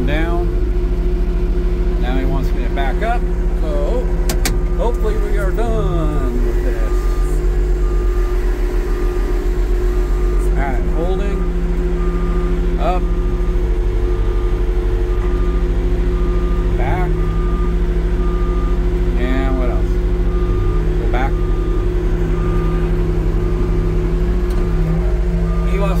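Engine of an old military extending-boom forklift running steadily at low revs, heard from inside its cab.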